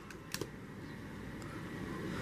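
A couple of faint clicks about a third of a second in as the disassembled phone's plastic parts are handled, then a low steady room hiss.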